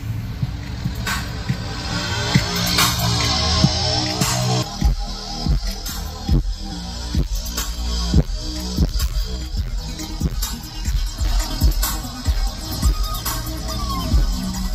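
Bass-heavy music played loud through a car audio system with two Skar Audio ZVX V2 18-inch subwoofers, heard inside the truck cab. Deep held bass notes give way, about five seconds in, to a steady beat with a deep hit a little under every second.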